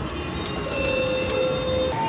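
VGT slot machine's electronic spin sounds as the reels turn: a bright, bell-like ringing for about half a second, with a lower steady tone underneath that cuts off just before the reels settle, over casino background noise.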